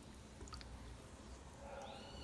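Faint stirring of cold milk and cornstarch with a silicone spatula in a stainless steel saucepan, with a few light clicks.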